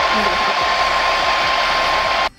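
Handheld hair dryer running steadily, a constant whine over rushing air, blowing on a freshly sprayed lace wig edge to set the glue so it lies flat.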